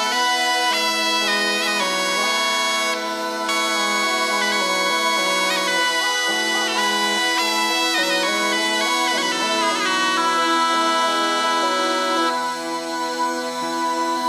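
Instrumental folk tune on bagpipes: a melody moving over steady held drone notes.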